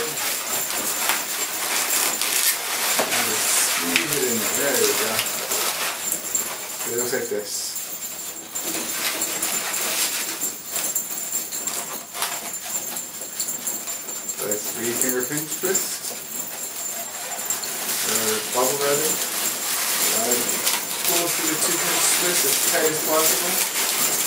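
Latex twisting balloons squeaking and rubbing against each other as they are twisted and tucked into a balloon figure. The squeaks come in short, wavering groups several times, over a steady rustle of rubber.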